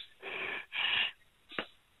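A caller's breathy exhales over a telephone line before answering the emergency dispatcher: two in the first second, then a short one near the end.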